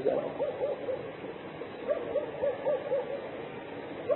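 Two runs of short hooting notes, about three or four a second, one near the start and a longer one from about two seconds in, heard over the steady hiss of an old tape recording.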